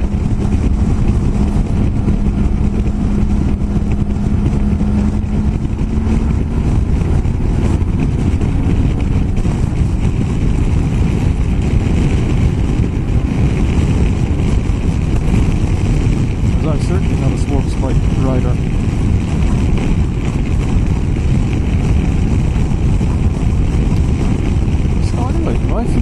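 BMW F800GS parallel-twin engine running at steady cruising speed on the road, under heavy wind rush on the microphone. A steady engine tone holds for the first six seconds or so, then fades into the rush.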